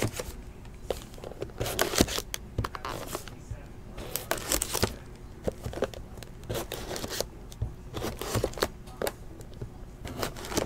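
Wrapping and packaging of Bowman's Best trading card boxes and packs being torn open and handled, in irregular bursts of crinkling and tearing with scattered clicks and scrapes.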